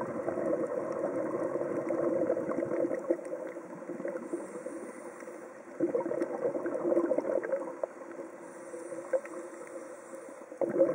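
Scuba regulator exhalation heard underwater: bubbling of exhaled air in two bursts of about two to three seconds each, with quieter stretches between as the diver breathes in.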